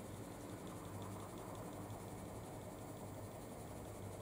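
Faint, quick, even rasping of a sieve being shaken as it sifts ground bsissa and sesame flour into a bowl, over a low steady hum.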